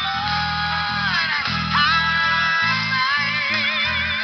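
Electric bass guitar playing a line of low notes along with a recorded worship-song track that carries the higher melody.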